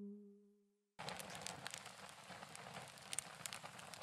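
A low ringing tone fades away to silence in the first second. Then, about a second in, the faint hiss and crackle of a burning wood fire starts suddenly, with irregular sharp pops.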